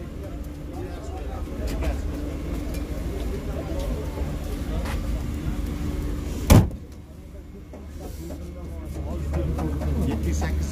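Car-market background: a steady low rumble with indistinct voices, broken by one sharp knock about six and a half seconds in.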